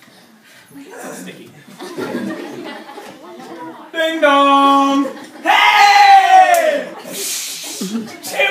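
A man's voice holding one long, flat note for about a second, then a louder cry that falls in pitch, then a short hiss. Before it, low murmuring and chuckling from a small audience.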